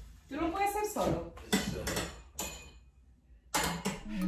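A brief, quiet voice, then a few short rustles and knocks as curtain panels are slid along a metal curtain rod.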